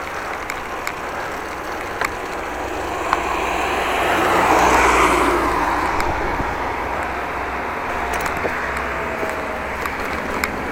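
A motor vehicle passing close by, its noise swelling to its loudest about halfway through and then fading away, over the steady rolling and wind noise of a moving bicycle.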